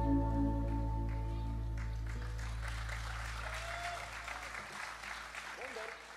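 A live band's last sustained chord ringing out and dying away, while audience applause builds from about two seconds in; the whole sound fades down toward the end.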